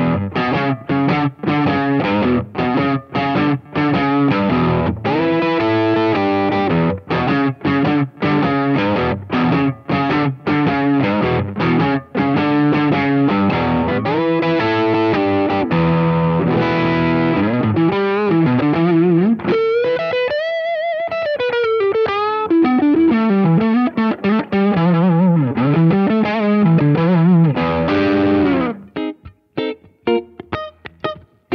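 Gretsch G2622-P90 Streamliner electric guitar with FideliSonic 90 single-coil pickups, played through an amp. The first half is choppy rhythm chords broken by many short stops. In the second half come single-note lead lines with string bends and vibrato, and the playing stops about a second before the end.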